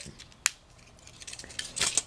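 Handling noise: a single sharp click about half a second in, then faint rustling that builds near the end.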